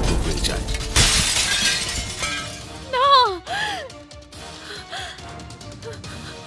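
Glass-shattering sound effect of a mirror breaking, a loud crash about a second in, over dramatic background music. A short vocal exclamation follows around three seconds.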